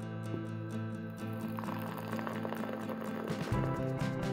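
Background music, with liquid being poured into a glass mug from about one and a half seconds in.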